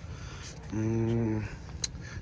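A man's voice holding a drawn-out hesitation sound ("yyy") at one steady pitch for under a second, mid-sentence, as he searches for a word.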